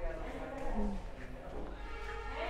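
Indistinct voices with no clear words, short pitched vocal sounds over a steady low background hum.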